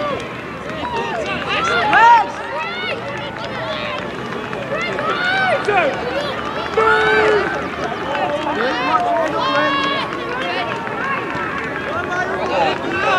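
Several overlapping voices shouting and calling out indistinctly, many of them high children's voices, during youth rugby play; one shout about two seconds in is the loudest.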